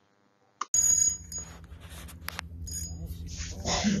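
Near silence, then a short blip, then outdoor sound from a fishing boat cuts in suddenly: a steady low hum with brief thin high ringing tones and scattered clicks, and a voice near the end.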